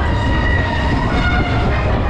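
Wind buffeting a camera microphone that rides on a spinning Tivoli Tip Top (Force 10) fairground ride: a loud, steady, fluttering rumble, with faint steady higher tones above it.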